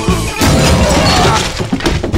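Cartoon soundtrack: music gives way, about half a second in, to a loud crash of shattering and breaking. A quick run of clattering knocks follows near the end.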